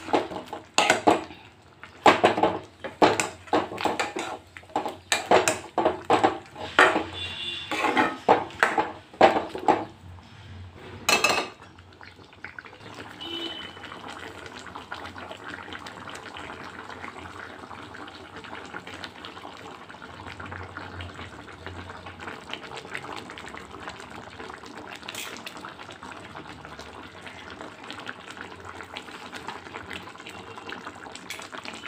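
A metal ladle scraping and knocking against a wok, many times in quick succession while chicken curry is stirred. The stirring stops after about eleven seconds, and a steady hiss carries on for the rest.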